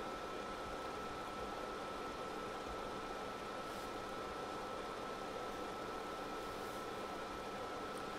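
Steady background hiss with a faint, steady high-pitched whine under it; nothing starts or stops.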